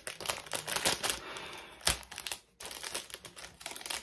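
Plastic packaging crinkling and rustling in a series of quick clicks as small items are handled, with one sharper tap a little under two seconds in.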